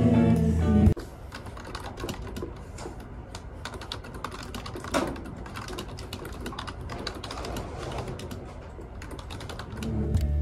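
Fast typing on a desktop computer keyboard: a dense, uneven run of key clicks, with one louder click about halfway through. Background music cuts off about a second in and comes back at the very end.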